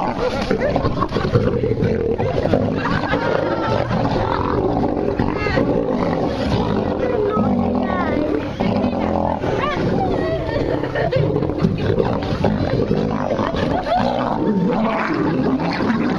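Male lions growling and snarling continuously as they fight over food, with people's voices mixed in.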